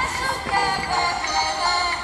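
Music with a singing voice carrying a wavering melody over a steady backing.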